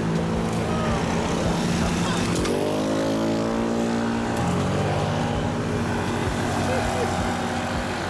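Vehicle engines running on the road, one rising in pitch as it accelerates about two and a half seconds in, then settling lower a couple of seconds later.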